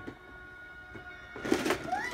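Quiet room with a faint steady hum, then about a second and a half in a brief rattle and clatter as a child handles a plastic toy doctor kit case, ending on a short rising voice sound.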